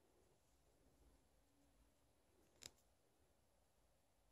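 Near silence: room tone, broken by one brief sharp click about two and a half seconds in.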